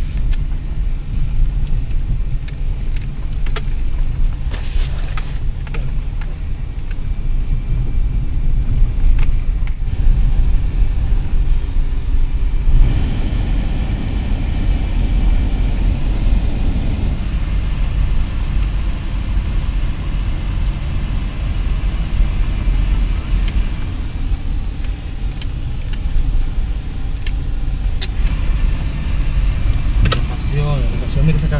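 Vehicle engine and road noise heard from inside the cab while driving, a steady low rumble with scattered rattles and clicks from the cabin.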